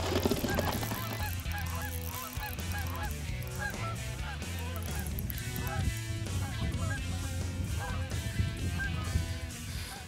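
Many short animal calls, repeated and overlapping through the whole stretch, over a low steady hum.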